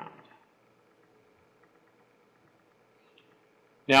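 Near silence: room tone with a faint steady hum, between a man's spoken words.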